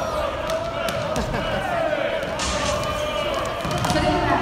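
Volleyballs being struck and hitting the hardwood court during warm-up, a string of sharp smacks at irregular intervals, over the steady chatter of many voices in the crowd.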